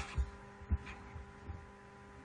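A few soft, low thumps in the first second and a half, over a steady electrical hum.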